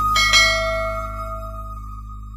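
Bell chime of a subscribe-button animation: two quick bell strikes just after the start, ringing out and fading over about a second. Underneath is a steady held note that carries on from the music before.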